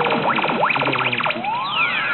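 Pachislot Zegapain slot machine's electronic sound effects: a run of quick rising and falling synthesized sweeps, then, about halfway through, a long rising sweep crossing falling ones as a screen effect plays.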